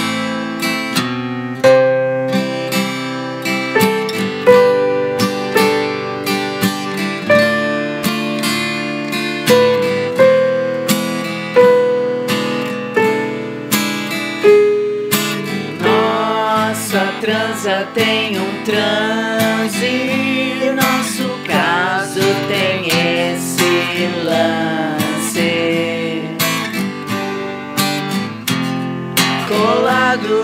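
Acoustic guitar playing the song's picked, strummed intro, with a voice starting to sing over it about halfway through.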